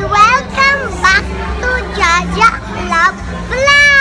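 A young girl talking excitedly in quick bursts, then giving a long, high, drawn-out call near the end that slides down in pitch, over a steady low hum.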